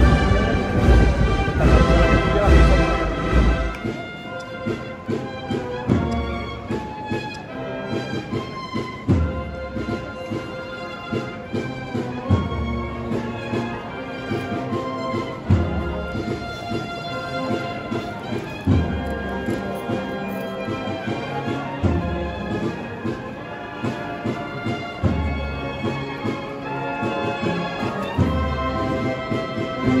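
Procession band playing a slow processional march, a brass melody over a heavy bass drum beat about every three seconds. The music changes abruptly about four seconds in, from a fuller, louder passage to this march.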